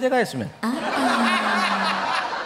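A man's voice, then laughter from the studio audience and panel breaking out about half a second in and carrying on over a held voiced note.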